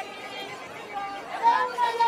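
Women singing in a group with long held notes over crowd chatter; the first second is a quieter lull of murmuring voices, and the singing comes back strongly about a second and a half in.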